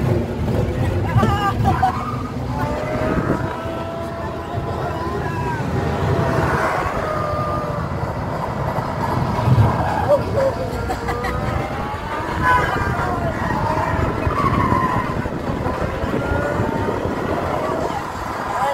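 Loud soundtrack of an arcade motion-simulator ride, continuous throughout, mixed with riders' voices and laughter that rise and fall in pitch.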